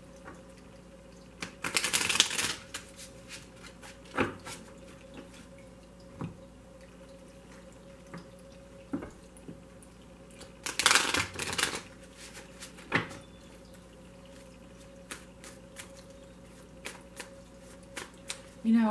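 A deck of tarot cards shuffled by hand: two bursts of shuffling, about two seconds in and again about eleven seconds in, with single taps and clicks of the cards between. Under it, the faint steady trickle of a small tabletop water fountain.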